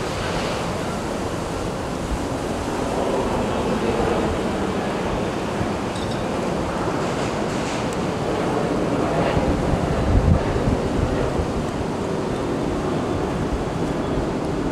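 Steady outdoor waterside noise: wind on the microphone over the wash of water, with a brief low swell about ten seconds in.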